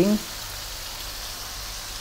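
Chopped tomatoes, garlic and bay leaves sizzling steadily in hot oil as they are sautéed in a pan.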